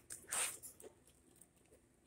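A brief rustle about half a second in, then a few faint light clicks, from a plastic oil-filter-cap pressure-test adapter being handled and lifted out of its foam-lined tool case.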